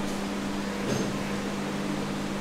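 Steady room hum and hiss, with a constant low tone, like ventilation or air conditioning running.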